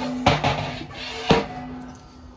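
Propane regulator and hose knocking down inside a patio heater's hollow metal post as it drops through: a few sharp knocks, the last about a second and a half in, with a ringing tone that lingers after them.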